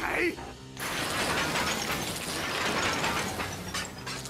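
Steam locomotive running gear (driving wheels and coupling rods) working in a dense mechanical clatter as the engine strains to move. It starts about a second in, after a short call.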